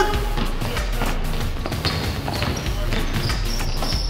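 Basketball bouncing on a hardwood court during a practice drill, heard as scattered thuds over background music with a pulsing beat.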